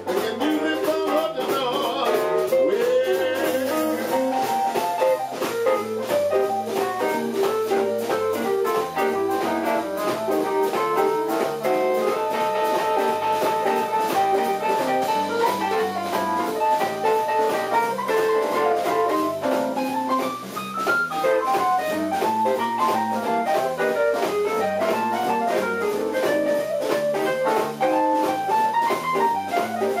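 Live blues band playing: electric guitar, electric bass, drum kit and keyboard, with a steady beat and a busy run of lead notes.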